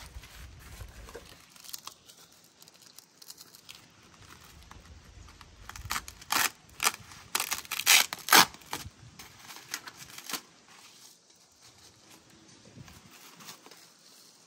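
Plastic bubble wrap being pulled and torn off a new heater core, crinkling and crackling. The crackles come loudest and sharpest in a run a little past the middle.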